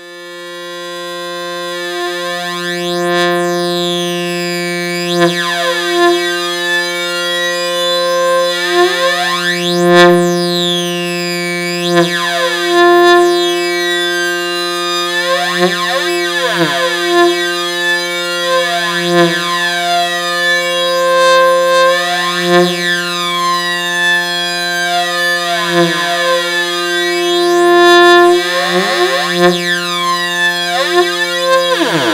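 Sustained synthesizer tone through a Moon Modular 530 stereo digital delay whose delay time is swept by an LFO, giving recurring flanging and chorus sweeps every few seconds. The tone fades in at the start.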